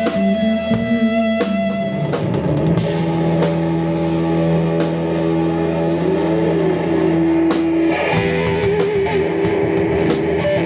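Live rock band playing: electric guitar holding long sustained notes over bass guitar and a drum kit. One held guitar note wavers up and down in pitch midway, and drum and cymbal hits keep time throughout.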